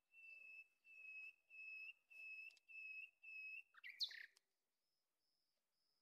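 Faint series of six short, steady, high whistled notes, evenly spaced a little under two a second, followed by a brief sliding chirp about four seconds in.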